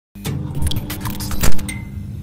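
Logo-intro sound effects: a quick run of sharp clicks and knocks over a steady low rumble, building to one loud hit about one and a half seconds in, followed by a short high tone.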